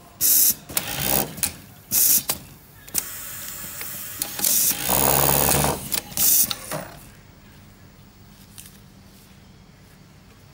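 Automatic glove label-sewing machine working through a cycle: several short, loud hissing bursts and a louder run of stitching about five seconds in. The machine falls quiet after about seven seconds, leaving a low steady hum.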